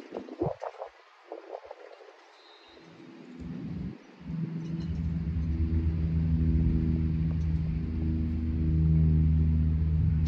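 A steady low engine hum with several held tones starts about four seconds in and runs on, swelling slightly near the end.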